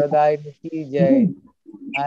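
A man's voice calling out over a video-call link in long, drawn-out syllables with bending pitch, two calls with a short break between them.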